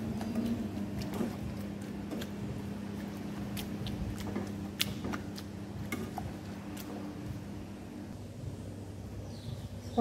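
Pumpkin being mashed together with peanut butter, maize meal and sugar in a pot, with scattered light knocks of the utensil against the pot over a steady low hum.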